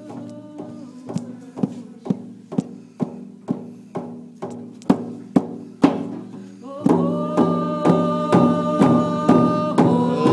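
Large single-headed rawhide hand drum beaten with a padded beater in a steady beat, about two strokes a second, each stroke ringing. About seven seconds in, a voice begins singing over the drumbeat.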